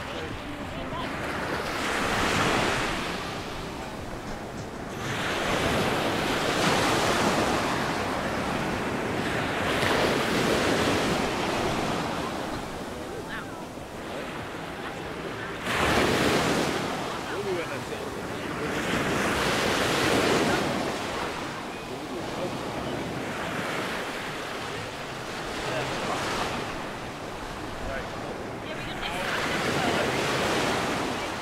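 Small Mediterranean waves breaking on a sandy beach, the surf and wash swelling and ebbing every four to five seconds. One break about halfway through comes in suddenly and louder than the rest.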